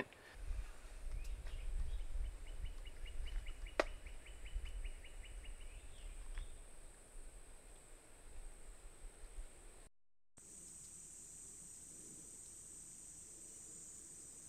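Outdoor field ambience: wind rumbling on the microphone under a steady high insect drone, with a short run of rapid, even ticks (about six a second) and one sharp click partway through. After a cut about ten seconds in, the level drops to a steadier, quieter high hiss of insects on a trail camera's own recording.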